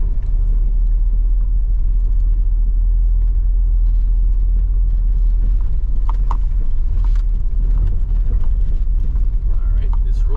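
Steady low rumble of a car driving slowly over a dirt road, heard from inside the cabin.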